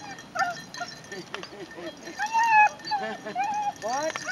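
German shepherd whining and yipping excitedly in a string of short high calls, with one longer whine about two seconds in. The dog is greeting people it is fond of.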